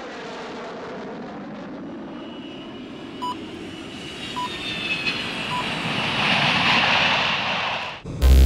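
Jet airliner engines heard as a plane flies in, the noise swelling into a loud high whine near the end and then cutting off suddenly. Three short beeps sound about a second apart in the middle.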